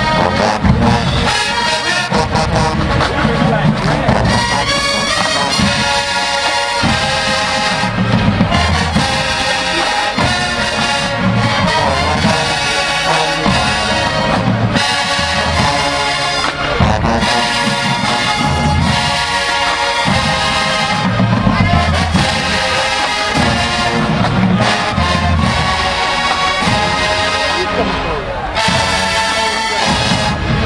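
College marching band playing loudly in the stands: a big brass section led by sousaphones, with the tuba bass line pulsing underneath and drums striking throughout.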